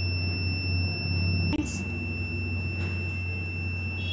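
Electronic buzzer of a home-made rain alarm sounding one continuous high-pitched tone, the signal that its sensor plate has detected water, over a steady low hum. The sound cuts out for an instant about one and a half seconds in, then carries on.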